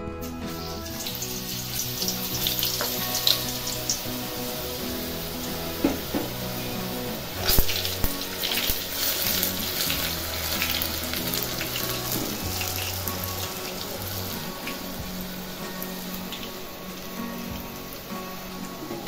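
Gram-flour batter dripping through a perforated ladle into hot oil, the boondi drops frying with a steady sizzling hiss that starts as the batter first hits the oil. A few sharp clicks stand out, the loudest about halfway through.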